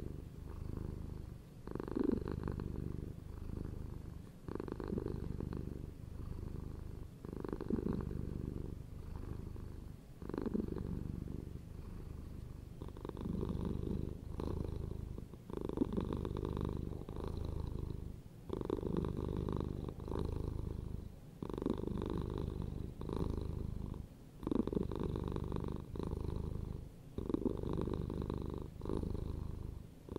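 A domestic cat purring close to the microphone, a low steady rumble that swells and eases with each breath about every three seconds.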